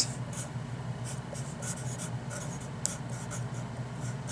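Sharpie felt-tip marker writing on paper: a run of short, irregular strokes, over a low steady hum.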